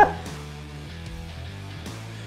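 Soft background music with steady low bass notes, after a brief pitched call right at the start.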